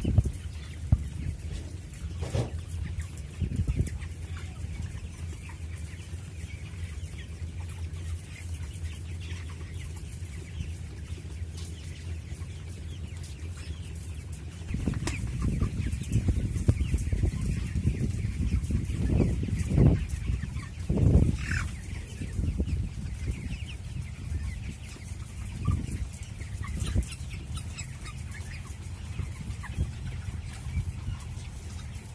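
Flock of 23-day-old broiler chickens (MB Platinum Japfa) clucking over a steady low hum. About halfway in, a louder rumbling joins and stays, with several louder peaks.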